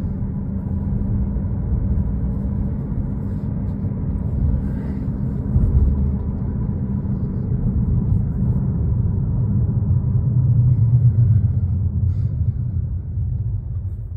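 Low, steady rumble of a car heard from inside its cabin while driving, swelling a little about ten seconds in.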